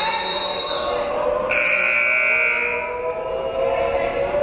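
Basketball gym's scoreboard horn sounding one steady blast of just over a second, about a second and a half in, during a dead ball. A fainter, higher steady tone sounds right at the start, over background voices in the gym.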